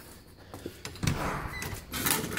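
A door being handled and opened: a few light clicks, then from about a second in a louder scraping rush with sharper clicks.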